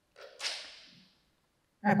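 A single short swish of noise that starts sharply and fades away within about a second.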